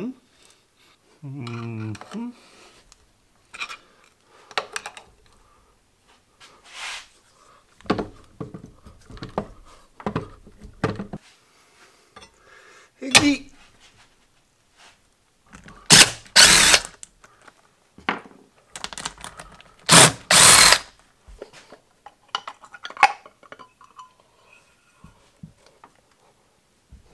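Metal clanks and knocks of wrenches and a steel bar worked on the cast-iron head of an antique Rottler boring bar, then the machine's electric motor switched on in two short bursts of about a second each, a few seconds apart, as the newly fitted 3D-printed drive gear is tried.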